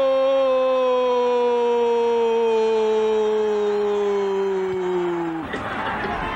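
A Brazilian TV football commentator's long, drawn-out "gol" shout celebrating a goal. It is one held call that slowly falls in pitch and cuts off near the end.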